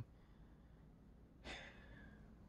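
Near silence, with one short, faint breath drawn in about one and a half seconds in.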